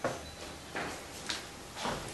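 A few short, soft knocks and clicks in a quiet room, four in about two seconds, the sharpest just past halfway.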